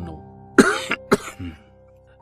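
Soft background music of steady held notes, with a short cough from a person about half a second in.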